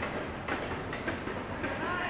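Steady outdoor background noise with a few short knocks about half a second apart, and a brief voice near the end.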